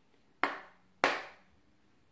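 Two sharp knocks on a deck of tarot cards, about two-thirds of a second apart, each dying away quickly: the deck being rapped to clear it before a reading.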